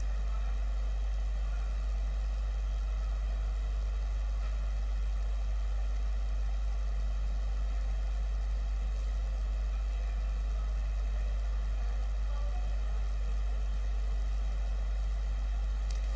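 A steady, unchanging low electrical hum with a faint hiss over it, the sound of a silent gap in a broadcast audio feed.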